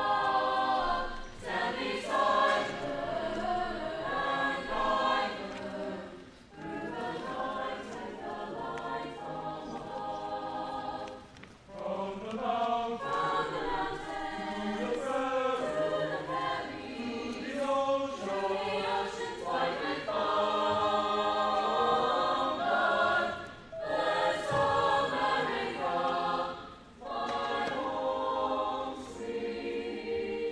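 Mixed school choir of boys and girls singing together in parts, in long held phrases with short pauses between them.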